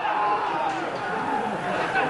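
Several men's voices calling out and chattering at once over the steady background noise of a football match broadcast.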